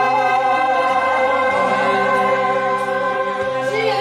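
Saxophone ensemble of soprano and alto saxophones playing a slow tune in harmony: long held notes, with the top melody line wavering in a slight vibrato.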